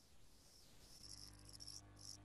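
Near silence: faint room tone on a video call, with a faint low hum coming in about a second in.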